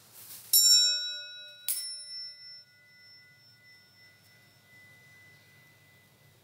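Altar bell struck twice, about a second apart, each strike ringing with several clear tones; the second one's tone rings on for several seconds as it fades. Rung at the elevation of the host during the consecration.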